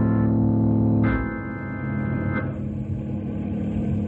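An organ music bridge: a held chord, then a second, higher chord about a second in that stops about two and a half seconds in. Under it a steady low drone of a helicopter engine sound effect comes in and carries on.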